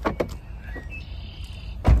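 Rear door window fittings of a Kia Sorento being worked: a few clicks, then a brief whir lasting under a second, then a loud thump near the end.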